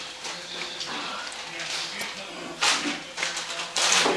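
Plastic squeeze bottle of barbecue sauce being squirted over pulled pork, with two short noisy squirts, one about two-thirds of the way in and one near the end.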